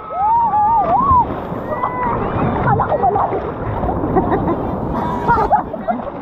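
Seawater sloshing and lapping around a camera held at the surface, with people's voices calling out and chattering over it; a long wavering call comes right at the start.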